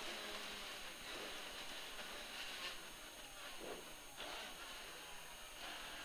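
Rally Mini's 1440cc 16-valve engine and wet-road tyre noise, heard faintly from inside the cabin as a steady haze with slight changes in revs.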